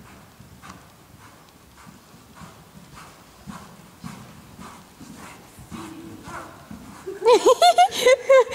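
A pony cantering on arena sand through a run of one-tempo flying changes: soft, muffled hoofbeats in a steady rhythm, about two a second. About seven seconds in, a person breaks into loud laughter.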